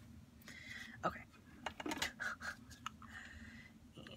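Light, scattered clicks and taps of small craft items being handled on a desk as a button and a hot glue gun are picked up, with a soft spoken "okay".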